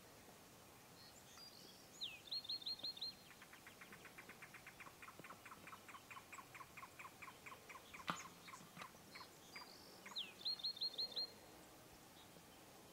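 A songbird singing outdoors: a high downslurred note followed by five quick high notes, given twice about eight seconds apart, with a long series of lower repeated notes, about six a second, running between the two phrases. A single sharp click a little after 8 seconds is the loudest moment.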